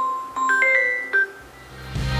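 Samsung Galaxy S21 ringing with an incoming call: a short, bell-like mallet melody of several notes that plays through the first second or so and then stops. A louder music track starts rising in near the end.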